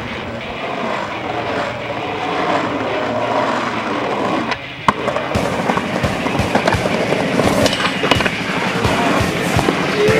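Skateboard wheels rolling on pavement, then a sharp clack about five seconds in, followed by a run of irregular clicks and knocks as the board rolls and bumps along a concrete sidewalk.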